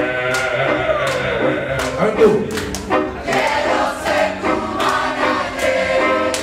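A crowd of voices singing a line back together in a call-and-response with a live band, over a steady beat.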